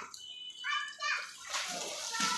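Water from a hose spraying and splashing over an elephant being bathed, with a louder rush of spray setting in about one and a half seconds in. Voices are heard before it.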